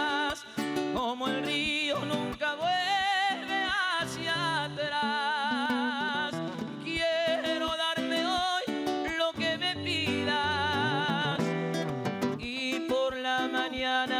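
A man singing a melody with a wide vibrato on held notes, accompanying himself on a classical nylon-string guitar.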